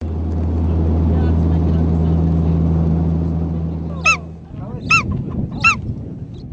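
A steady low motor hum that turns into a rougher rumble about four seconds in, with three loud bird calls near the end, each a short cry that rises and falls in pitch, less than a second apart.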